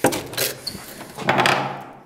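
Old wooden door being pushed open: a sharp knock at the start, then a longer scraping creak as it swings, about a second and a half in.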